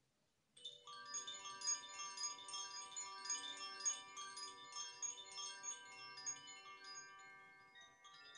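Four hanging bamboo-tube wind chimes set swinging by hand, their clappers striking again and again so that many clear tones ring over one another. The ringing starts about half a second in and grows quieter toward the end.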